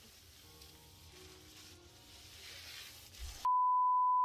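Low room noise, then about three and a half seconds in a loud, steady single-pitch beep switches on suddenly: the test tone that plays with television colour bars.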